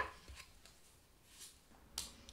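Faint handling of tarot cards and a small polished stone on a table: a soft tap at the start, a brief rustle about one and a half seconds in, and another tap near the end as a card is set down.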